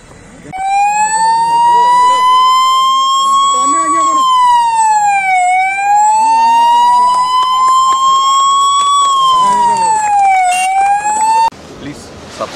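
Electronic siren wailing loudly, with a slow rising sweep and a quicker fall, twice over. It starts a third rise and then cuts off abruptly near the end, with faint crowd voices beneath it.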